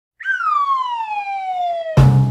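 Logo-intro sound effect: a single whistling tone that glides steadily downward for almost two seconds, ending in a sudden deep booming hit.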